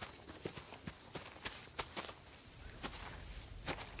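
Footsteps of two people walking through tall grass and undergrowth: an irregular scatter of soft crunches and small snaps.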